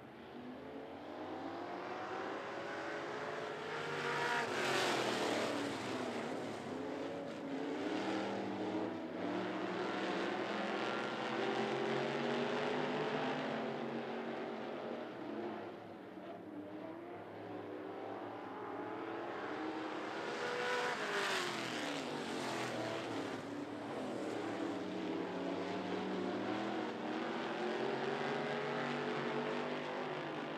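Street stock race cars' engines running on a dirt oval: a steady engine drone, getting loudest and dropping in pitch as the cars pass close, once about five seconds in and again about two-thirds of the way through.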